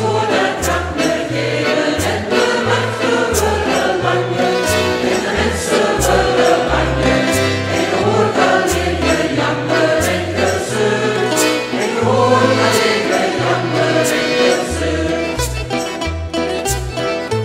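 A mixed choir singing with piano-accordion accompaniment, over a line of low bass notes that changes about twice a second and a steady beat of short ticks.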